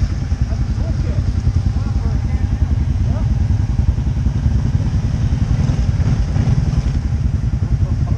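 ATV engine running at low revs, a steady low rumble with a fast, even firing beat.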